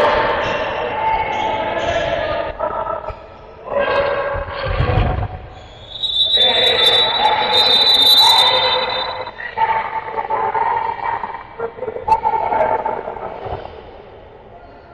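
Voices calling out in a sports hall during a handball match, with a handball bouncing on the court. About six seconds in, a long high steady tone sounds for roughly three seconds.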